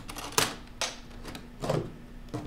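Three short, sharp clicks over a faint steady hum.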